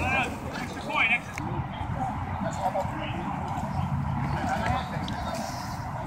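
Distant shouts and calls from players on a grass football field, over a steady low rumble.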